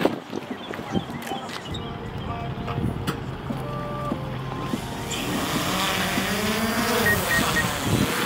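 Small quadcopter drone on a trailer deck, its motors first turning with a low steady hum, then about five seconds in spinning up to a loud whine with rushing propeller noise as it lifts off, the whine rising and falling in pitch.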